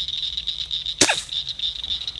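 A single sharp shot from a Daisy Red Ryder lever-action spring-air BB gun about a second in, fired at a frog at close range, over a steady high buzz of night insects.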